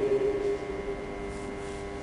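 A single musical note held at a steady pitch in a reverberant church, loud for about the first half second and then continuing more quietly at the same pitch.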